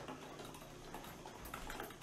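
Metal measuring spoon stirring water in a thin plastic cup, with faint, scattered light ticks as it taps the sides.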